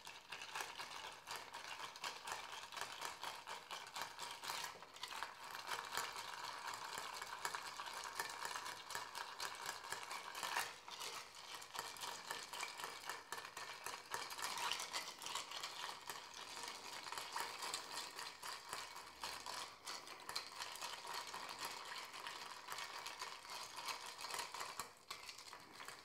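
Bar spoon stirring ice cubes in a glass mixing glass: a quiet, continuous clinking and rattle of ice against glass that stops about a second before the end.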